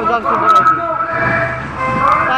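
A group of marchers chanting political slogans together, several voices shouting over one another.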